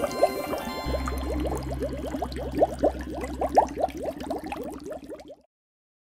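Bubbling water sound effect, a fast run of short rising blips, over a music bed whose low bass note comes in about a second in. Everything cuts off suddenly about five and a half seconds in.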